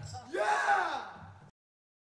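A single vocal whoop that rises and then falls in pitch, just after the band's last chord dies away. The audio cuts off suddenly about one and a half seconds in.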